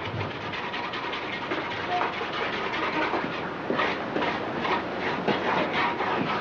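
A brush scrubbing and dabbing paint on a board, a run of irregular scratchy strokes that grow sharper and more frequent from about halfway in.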